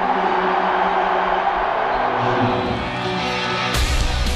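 An arena crowd cheers over a held, building music intro. Near the end a loud heavy-rock wrestling entrance theme crashes in with drums and electric guitar.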